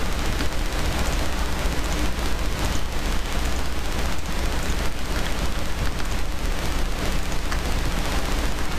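Steady, loud microphone noise: an even hiss across all pitches over a strong low hum, with a few faint ticks, from a poor-quality recording.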